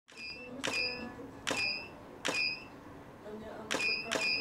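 A camera shutter firing studio flashes four times, each click followed by a short high beep from the Profoto strobes signalling they have recharged.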